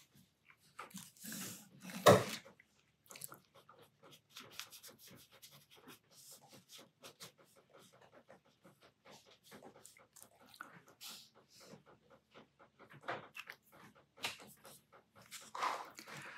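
Brush pen dabbing short strokes onto sketchbook paper: a long run of soft, irregular scratchy ticks, several a second, with one louder knock about two seconds in.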